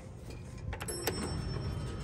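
A click about a second in as the elevator's hall call button is pressed, followed by a thin, high ding from the Dover hydraulic elevator that rings on for about a second, over a low steady hum.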